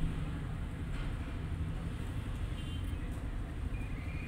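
Street traffic noise: a steady low rumble of vehicle engines, with a few faint high tones near the end.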